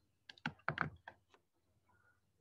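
Faint clicks and taps of a stylus tip on a tablet or touchscreen as handwriting is inked, several in quick succession in the first second.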